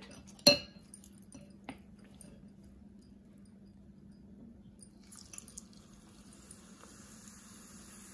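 A metal spoon clinks sharply once against a glass mixing bowl of gram-flour batter. From about five seconds in, hot oil sizzles steadily in a frying pan as a batter-coated onion slice goes in to deep-fry.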